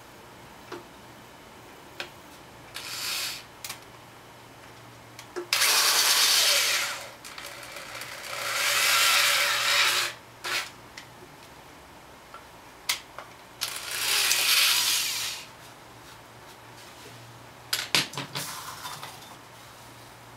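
Handheld electric drill with a 5/16-inch bit boring a hole through a plastic intercooler pipe, run in bursts: a brief one about three seconds in, then three longer runs of one to two seconds each. A few knocks and clicks from handling the pipe and drill fall between the runs.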